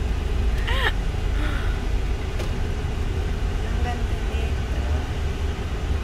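Steady low rumble of a car's engine and tyres heard from inside the cabin as the car rolls slowly, with a short vocal sound about a second in.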